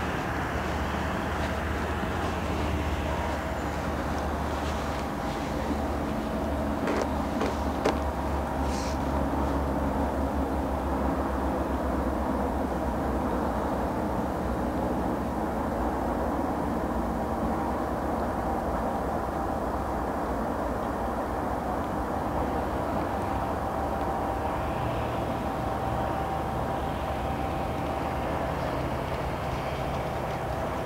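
Steady low background rumble with faint humming tones, like distant traffic or machinery, and a few brief clicks about eight seconds in.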